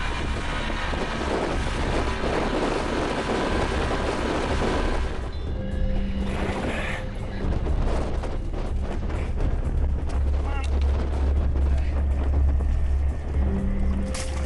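Yamaha 55 outboard motor running with the boat under way, mixed with wind and background music.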